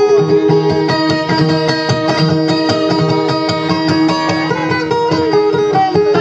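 Guitar playing a dayunday instrumental passage: quick plucked melody notes over held drone tones, with no singing.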